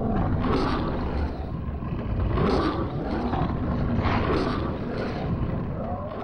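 Cartoon stomach-growl sound effect: a loud, long, low rumble that wavers up and down in pitch for about six seconds.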